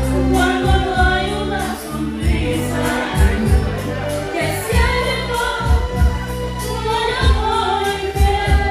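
A woman singing in Spanish into a microphone over a karaoke backing track with a steady bass beat.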